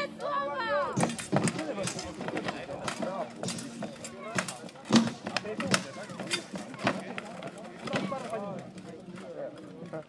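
Steel one-handed swords striking shields and plate armour in a bout between armoured fighters: a quick run of sharp clashes, a dozen or more, irregularly spaced, over the murmur of spectators' voices.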